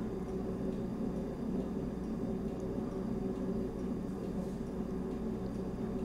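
Quiet steady hum and hiss of room tone, with no distinct sound event.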